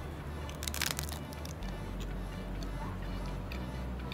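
A crisp bite into a thin pistachio oblea wafer: a short burst of cracking crunches about a second in, over background music.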